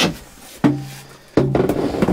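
Two plucked musical notes, each starting suddenly and ringing briefly, the second about 0.7 seconds after the first: a short music sting.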